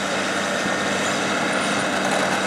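Caterpillar crawler bulldozer's diesel engine running with a steady drone as the dozer pushes dirt with its blade.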